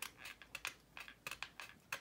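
Hobby razor saw being drawn slowly by hand through a plastic model fuselage along a masking-tape line, giving faint, irregular scratchy clicks.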